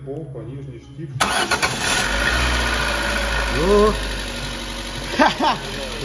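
Lada Granta's 8-valve four-cylinder engine cranking and catching about a second in, then running steadily at idle on a freshly fitted timing belt. It starts and runs, showing that the sheared-tooth belt left the valves unbent.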